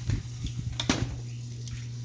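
A few short knocks and clinks, the loudest about a second in, as a smoked rack of pork ribs is set down on a metal tray and worked with a steel carving fork, over a steady low hum.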